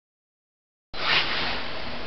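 Silence, then from about a second in a steady hiss of room tone inside a lift car, with a brief slightly louder rustle just after it begins.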